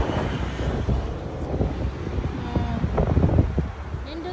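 Wind blowing across the phone's microphone, an uneven low rush of noise.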